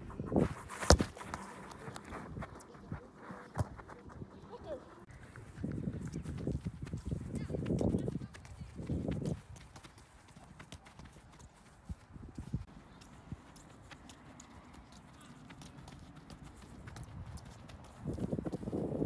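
A soccer ball is struck hard twice with the foot in the first second. Later come a run of light, quick touches of the boot on the ball and footsteps on artificial turf as the ball is dribbled.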